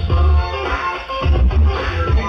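Electronic dance music with a heavy bass line, playing for a popping dancer; the bass drops out briefly just under a second in, then comes back.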